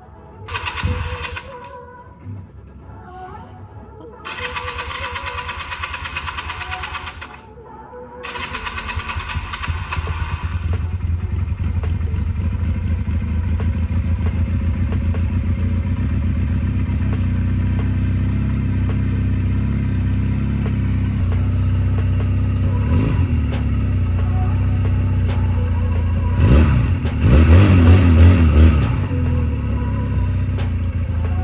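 A 2009 Honda Rebel 250's air-cooled parallel-twin engine is cranked on the electric starter in two tries. It catches about ten seconds in and settles into a steady idle, with a short rev about 23 seconds in and a louder blip of the throttle near the end.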